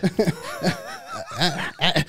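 Two men chuckling and snickering in short, broken bursts of laughter.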